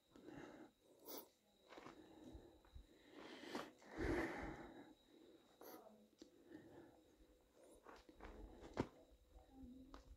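Near silence: faint ambience with a few soft clicks and a brief rustle about four seconds in.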